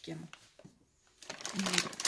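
Crinkling and rustling of a plastic dry-dog-food bag as it is picked up and handled, starting a little over a second in.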